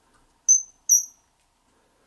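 Fly-tying bobbin holder giving two short, high-pitched squeaks about 0.4 s apart as thread is drawn off the spool. The bobbin is misbehaving and is about to be fixed.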